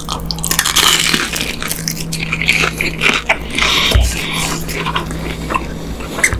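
Close-miked biting and chewing of a crispy fried hotdog: dense crunching of the fried crust for the first few seconds, then sparser, wetter chewing clicks.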